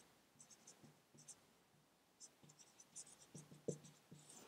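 Faint squeaks of a dry-erase marker writing on a whiteboard, in a quick run of short strokes.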